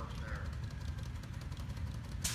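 A steady low engine rumble, with faint voices in the background.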